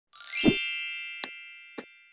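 Logo-intro sound effect: a bright chime that sweeps up over a short low thud, then rings and slowly fades, with two short clicks in the second half.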